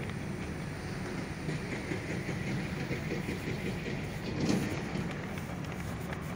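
Steady outdoor noise: a low rumble with a hiss above it and no distinct single event, swelling slightly about four and a half seconds in.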